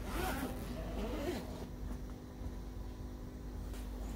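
Needle-nose pliers clicking and scraping on a thin steel notebook-spiral wire as it is bent into a small loop, over a steady low hum.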